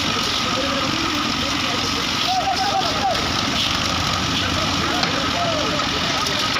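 A small engine running steadily under the site noise, with a thin steady whine over it; workers' voices call out briefly in the background, most clearly around two to three seconds in.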